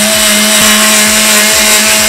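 Oster countertop blender running loud and steady, puréeing chopped celery and water into a smooth green liquid.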